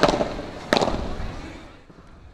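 Padel ball being hit in a rally: two sharp pops about three-quarters of a second apart, each ringing briefly.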